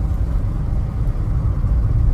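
A moving car's steady low road and engine rumble, heard from inside the cabin.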